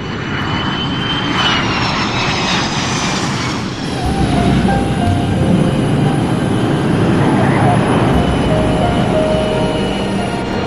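Jet airliner engines running loud on the runway, with a high whine falling in pitch over the first few seconds, then a steady deep rumble.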